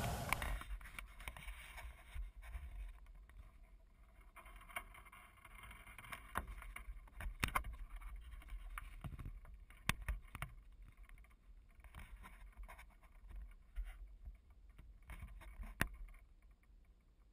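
Faint handling noise from an action camera being gripped and turned: scattered clicks and knocks of fingers on the housing over a low wind rumble, with a sharper click near the end.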